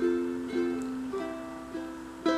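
Cordoba 30T all-solid mahogany tenor ukulele being fingerpicked: about four chords about half a second apart, each ringing and fading.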